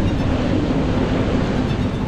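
Strong wind of a mountain blizzard blowing steadily.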